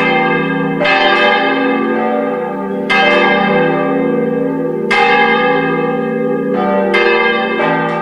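Church bells ringing: strikes roughly every two seconds, each ringing on and overlapping the next, then a few strikes in quicker succession near the end.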